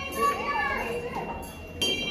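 A child's voice chattering while a large prayer wheel is turned by hand. Near the end the wheel's bell rings once, a sharp strike with a ringing tail.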